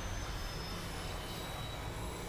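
Steady low rumbling noise with a faint hiss above it, from the anime episode's soundtrack.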